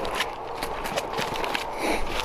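Boots crunching and rustling through dry corn stubble: an irregular run of crackles and snaps.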